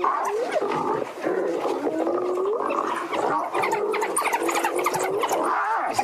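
A hyena under attack by a pack of African wild dogs, giving a string of drawn-out calls that rise in pitch at their ends, mixed with growls, while the wild dogs' short high chirps keep up over it.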